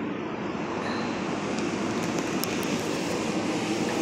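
Steady background rumble that swells slightly, with a couple of faint clicks.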